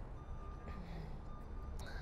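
A vehicle's reversing beeper sounding faintly, one steady high beep lasting most of the first second, over a low rumble.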